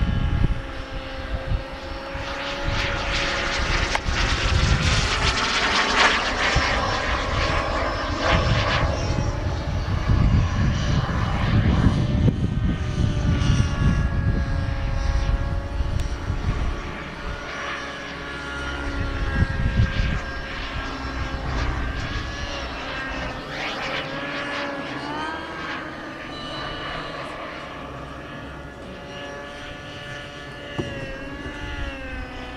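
The model jet turbine of a King Cat RC jet whines as it flies overhead, its pitch rising and falling several times. Bursts of low rumble sit under it, heaviest in the first half.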